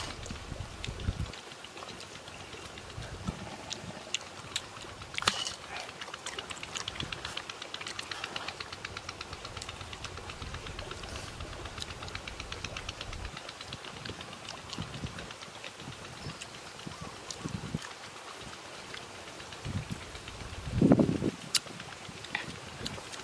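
Eating sounds: crunchy chewing of fresh shredded vegetable salad, with wind buffeting the microphone in low gusts. A short low hum is the loudest sound, near the end.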